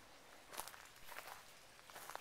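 Faint footsteps of someone walking while filming, about three steps a little over half a second apart.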